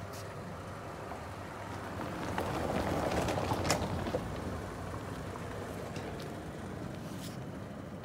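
A motor vehicle's running noise swells to its loudest about three to four seconds in and then eases off, over a steady low rumble, with a few sharp clicks scattered through it.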